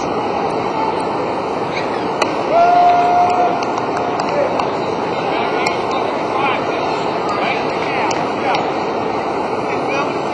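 Crowd chatter: a steady din of many indistinct voices. A sharp knock about two seconds in is followed by a short swell in the noise with one voice briefly held on a single note.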